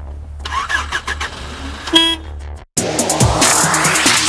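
A car horn gives one short honk about two seconds in, over a low steady rumble. After a brief cut-out a little before three seconds in, music starts.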